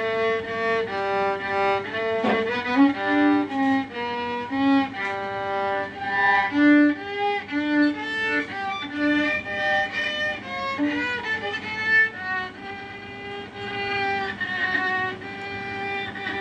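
Solo violin, bowed, playing a melody of separate held notes, a few of them with vibrato.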